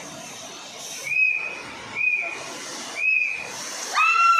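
Three short high whistles about a second apart, over the steady hiss of a water spray jet and a rushing river.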